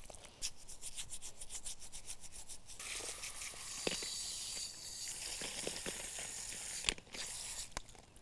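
A dish brush scrubbing hard-shelled quahog clams in quick scratchy strokes, then a steady hiss of hose water running over the pile, with a few sharp clicks of shells knocking together.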